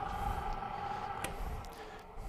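Grizzly metal lathe running with its chuck spinning, a steady motor and gearhead hum with a faint click or two, easing off slightly near the end. The carriage feed gear is not engaged, the lever having stopped in neutral, so only the spindle turns.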